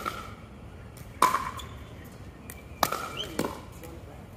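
Pickleball paddles striking a hollow plastic ball in a rally: three sharp, ringing hits about a second and a half apart, then a softer knock just after the third.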